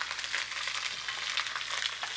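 Turkey neck and gizzard pieces sizzling as they brown in a frying pan: a steady hiss with light crackling.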